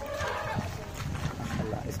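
Faint, indistinct voices over a low background hum, with no clear call from the cattle.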